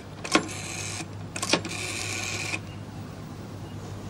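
Telephone being dialled: two short mechanical whirring spells, each starting with a click, the second ending a little over halfway through.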